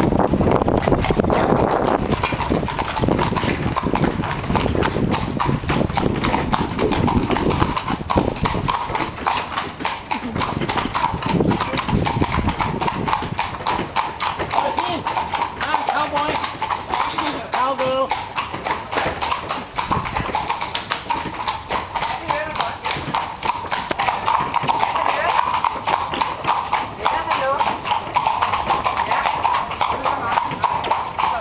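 Hooves of a horse pulling a carriage clip-clopping on a cobblestone street in a steady walking rhythm.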